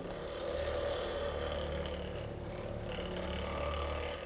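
Benchtop vortex mixer running steadily, starting as it is switched on, with a glass vial of leaf homogenate held on its cup to mix it.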